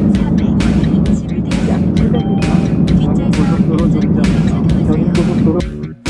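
Background music with a steady beat, about two beats a second, cutting off just before the end.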